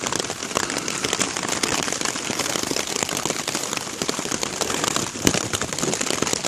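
Heavy rain falling on a tarp shelter: a dense, steady patter of many small drop ticks, with one sharper tick about five seconds in.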